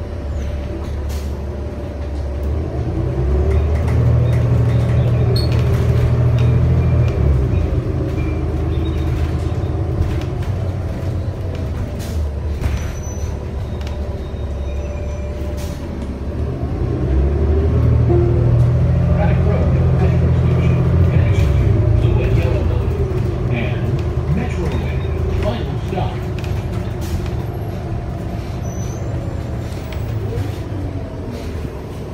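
Cummins L9 diesel engine and Allison automatic transmission of a New Flyer XD35 transit bus heard from inside the passenger cabin. The low engine drone swells twice, about three seconds in and again past the midpoint, with its pitch rising and falling through the gear changes, over steady road noise and occasional clicks.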